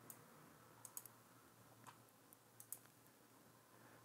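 A few faint, separate computer mouse clicks against near silence.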